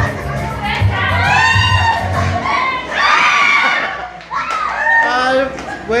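Music with a steady beat plays and cuts off suddenly about two and a half seconds in, the stop-signal in a game of musical chairs. A group of women shriek and laugh as they scramble for the chairs.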